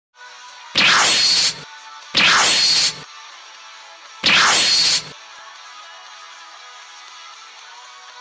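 Three loud whoosh-like sound effects, each a little under a second long with a falling sweep, spaced about a second and a half to two seconds apart, over quiet background music.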